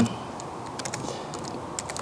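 Computer keyboard typing: a few light, scattered keystrokes as code is entered to run a test.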